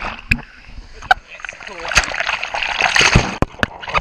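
Water splashing and sloshing right against the microphone as the camera is moved through the pool surface, with sharp knocks and clicks scattered throughout, loudest about two to three seconds in.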